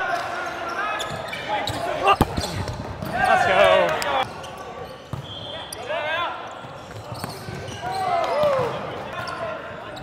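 Volleyball players' short shouted calls during a rally, with a sharp smack of the ball about two seconds in, in a large gym.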